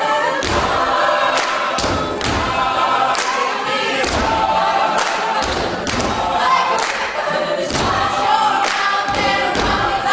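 Mixed-voice a cappella choir singing a pop arrangement, voices only, over a regular low percussive beat.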